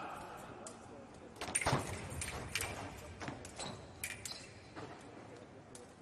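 Foil fencers' footwork on the piste: an irregular run of sharp taps and stamps starting about a second and a half in, with a few brief metallic rings of the blades meeting.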